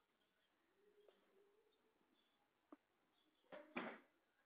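Near silence with faint bird calls, and a short scuffing noise just before the end.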